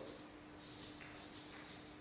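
Chalk writing a word on a blackboard: faint scratching strokes of the chalk.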